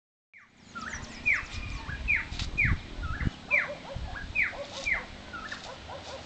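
An animal's repeated high calls, each one falling sharply in pitch, about one every three-quarters of a second, with shorter lower notes in between.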